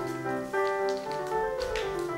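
Piano music playing a melody of held notes, with a few light taps over it.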